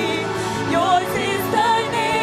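A church worship team singing a worship song with band accompaniment, voices holding long sung notes over steady keyboard chords.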